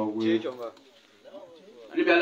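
A man's voice speaking into a handheld microphone, a drawn-out phrase in the first half-second or so, then a short lull with only faint voice sounds before speech picks up again at the end.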